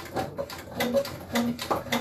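Harbor Freight hydraulic lift table being pumped up, a quick, irregular run of short mechanical clicks as it raises its load.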